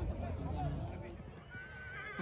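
A horse neighing near the end: a high held note that starts to fall and waver. Men's voices come before it.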